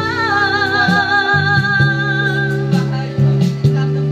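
Karaoke singing into a handheld microphone over a backing track: a long, wavering held note that stops about two and a half seconds in. After that only the backing track plays, with a steady bass line and beat.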